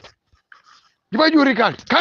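Speech only: a voice talking, with a pause of about a second near the start.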